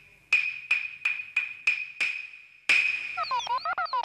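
Wooden clappers (hyoshigi) struck sharply, about three times a second and then once more after a pause: seven clacks, each with a short bright ring, the stage cue for a curtain opening. In the last second a warbling cartoon sound effect starts.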